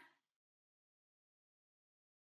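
Near silence: the end of a spoken word dies away in the first moment, then the sound cuts to dead digital silence.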